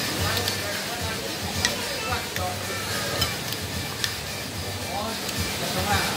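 Fork and spoon clinking lightly against a ceramic plate a few times while rice is mixed and scooped, over steady background noise with faint voices.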